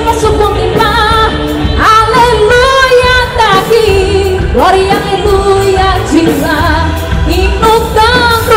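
Live gospel band music: a woman sings long held notes with vibrato and upward slides, without clear words, over bass, drums and electric guitar.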